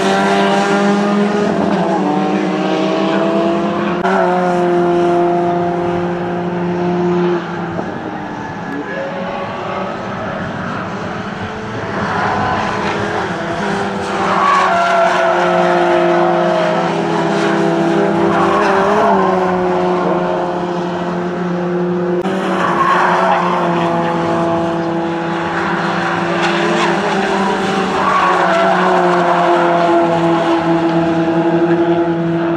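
Peugeot 208 race car engines running hard on the circuit. The pitch holds, then drops and climbs again several times through gear changes as the cars come by.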